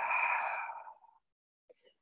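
A woman's slow, deep exhale, a breathy sigh that fades away about a second in.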